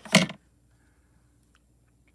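A single brief, loud handling knock right at the start as hands work the foil and paper on the foil press plate, then near silence with a couple of faint ticks.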